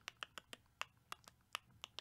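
A faint, quick run of about ten sharp clicks at an uneven pace, roughly five a second.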